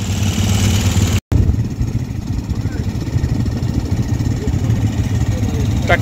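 Quad bike (ATV) engines idling: a steady low rumble, broken by a brief dropout about a second in.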